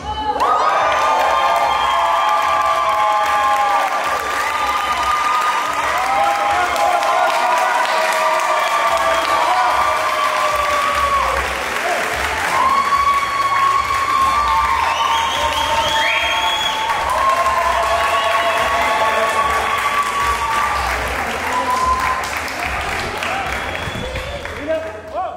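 Audience applauding and cheering, with many long held whoops over the clapping, easing off near the end.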